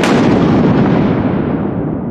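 A cinematic boom sound effect: one sudden, deep impact that carries on as a long, slowly fading rumble.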